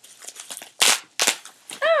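Plastic package wrapping being torn and pulled open by hand, with two short sharp rips close together about a second in and lighter crinkling around them.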